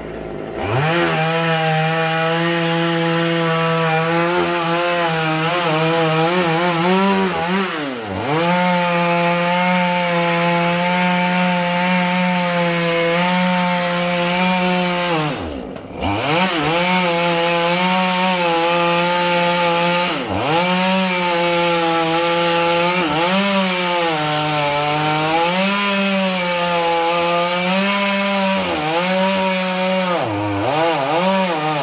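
Chainsaw run at full throttle, cutting through the thick trunk of a dầu (yang) tree; the engine revs up about half a second in and holds high. The revs dip briefly three times, around a quarter, half and two-thirds of the way through, and waver up and down near the end as the chain works through the wood.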